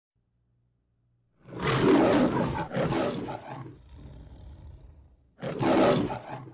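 A lion roaring twice: a long roar starting about a second and a half in, then a second roar near the end.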